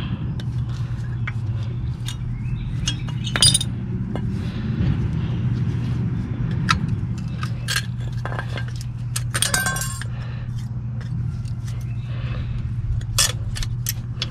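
Metal-on-metal clinking and tapping as worn brake pads and their clips are pried out of a steel caliper bracket with a screwdriver: scattered sharp clicks, with a quick run of rattling clinks about ten seconds in. A steady low hum runs underneath.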